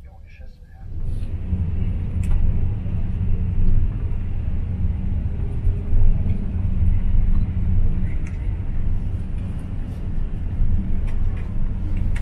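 Steady low rumble of a car on the road, heard from inside the cabin: engine and tyre noise that comes in suddenly about a second in and then holds steady.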